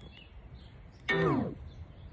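A faint outdoor background, then, about a second in, one short pitched sound that slides steeply downward in pitch and is gone within half a second.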